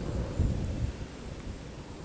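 Low, irregular rumble of wind buffeting the microphone.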